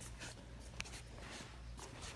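Refrigerated bakery display case running with a faint steady low hum, with a few light scuffs and clicks over it.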